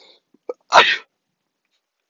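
A man sneezing once: a single short, loud burst about three quarters of a second in.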